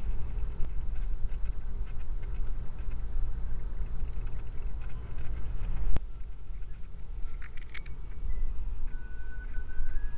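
Steady low rumble of a car driving, heard inside the cabin, with a single sharp click about six seconds in and a few faint short chirps shortly after.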